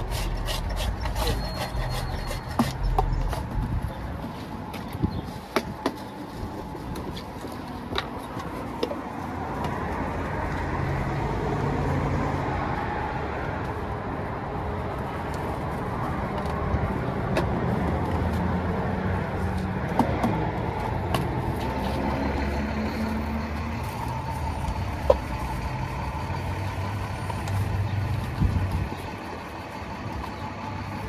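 Street traffic: a road vehicle's engine rumbling nearby, swelling and easing as it runs. Scattered light clicks and knocks sound over it, mostly in the first third, with one sharp click later.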